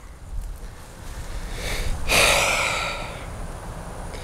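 A man's long sigh, one breath that swells about two seconds in and fades away over the next second.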